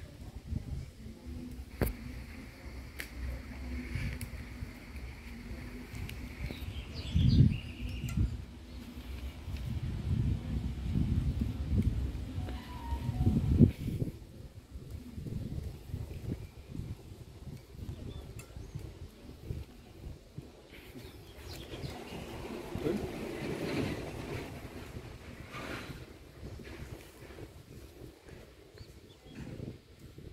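Rustling and rubbing of string being wound and pulled tight around split bamboo kite sticks close to the microphone, with uneven low bumps and two sharper knocks about seven and thirteen seconds in.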